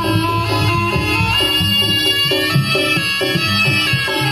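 Live Javanese jaranan accompaniment music: a melody stepping quickly through short notes over steady, driving drum and gamelan percussion.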